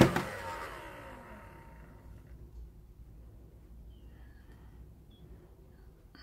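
Handheld heat gun switched off, its fan and blower noise winding down with a falling pitch over about a second and a half, leaving quiet with only faint handling sounds.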